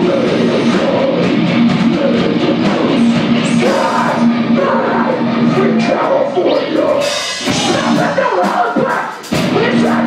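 Hardcore band playing live through the club PA, heard from the back of the room: distorted guitars, drums and vocals. About seven seconds in the low end thins out, the sound drops briefly just after nine seconds, then the full band comes back in.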